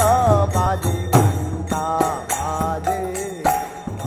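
Kirtan: a lead voice chanting a mantra into a microphone, its pitch sliding between phrases, over mridanga drums beating a steady rhythm.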